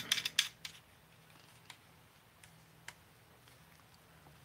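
Small clicks and light scrapes of a baitcasting reel being seated into a rod's reel seat by hand, busiest in the first half-second, then a few isolated ticks as the fitting is snugged down.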